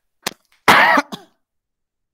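A man clearing his throat: a short click, then one loud voiced burst of about a third of a second and a brief tail, with dead silence around it.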